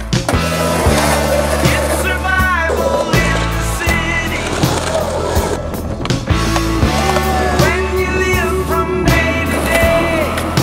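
Background music with a steady bass line and a regular beat, a gliding melody line coming in at a few points.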